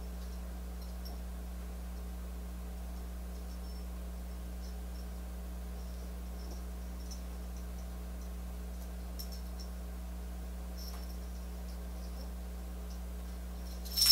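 Steady low electrical hum, with a few faint soft ticks scattered through it.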